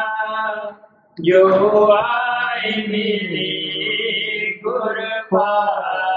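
A voice chanting a line of a devotional hymn in long, held notes, with a brief break about a second in.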